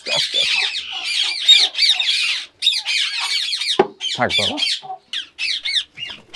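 A flock of Indian ringneck parakeets calling continuously, many short rising-and-falling high notes overlapping one another, with a short gap at about two and a half seconds.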